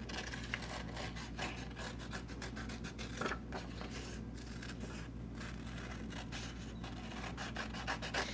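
Scissors cutting through a sheet of paper in short, irregular snips, with the paper rustling and rubbing as it is turned.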